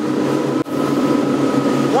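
Sportfishing boat's engines running steadily at high trolling speed: a constant drone with a couple of held tones over a rush of wind and water. The sound drops out for an instant just over half a second in.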